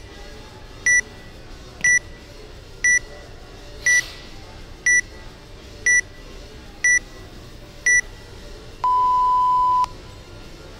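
Workout-timer countdown: short high beeps once a second, nine in a row. Near the end comes one longer, lower beep of about a second, the signal that the timed workout has begun.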